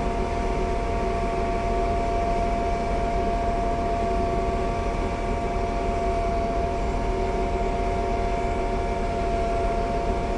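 A Metrobus city bus running, a steady engine rumble with a high, even whine of several held tones on top.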